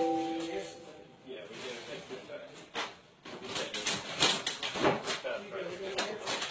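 A short, steady electronic tone of a few pitches right at the start, then indistinct, off-mic voices with scattered knocks and handling noises.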